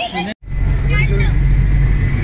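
A voice cut off abruptly by an edit. After it, the steady low rumble of a vehicle's engine and road noise, heard from within a moving vehicle in traffic, with a faint voice about a second in.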